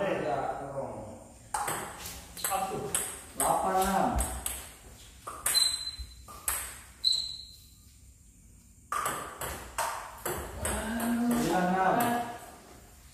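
Table tennis rallies: a plastic ball clicking sharply off paddles and the table several times a second, with a short pause between points in the middle.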